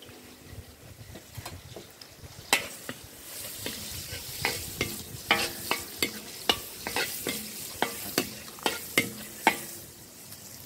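Rice with unpeeled garlic stir-frying and sizzling in a metal wok over a wood fire. A spatula scrapes and knocks against the pan about once or twice a second from a couple of seconds in.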